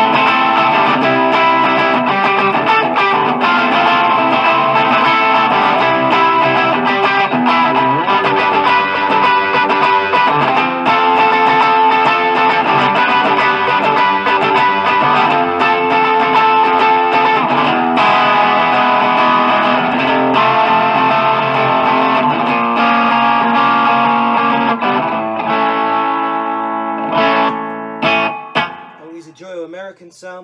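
Electric guitar, a Strat-style Encore, played through an Orange amp into a Marshall MG 4x12 cabinet loaded with four Celestion 12-inch speakers: continuous chords and riffs that thin out and ring away a few seconds before the end.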